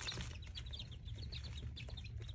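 A brooder of young chicks peeping: many short, high chirps overlapping in a rapid scatter, over a steady low hum.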